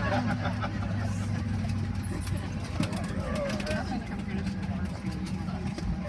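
Passengers talking in the cabin of a parked Boeing 737-800, over the aircraft's steady low hum.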